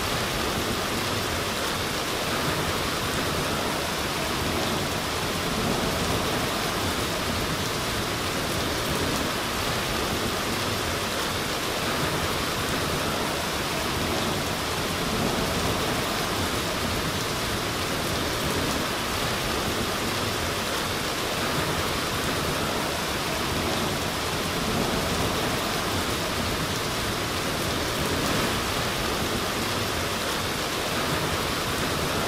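Rain falling steadily in a thunderstorm, an even, unbroken hiss with no distinct thunderclap.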